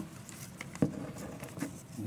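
Faint handling noises at a wooden lectern: soft rustling with a few small clicks, the sharpest a little under a second in.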